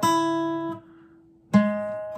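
Acoustic guitar picking a two-note blues turnaround shape on the fourth and second strings. One pair of notes is struck at the start and mostly damped just under a second in, leaving one note ringing. A second pair is struck about one and a half seconds in.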